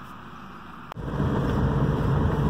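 Faint steady hum inside a stopped car, a brief click, then about a second in the louder steady rumble of road and engine noise heard from inside a moving car's cabin.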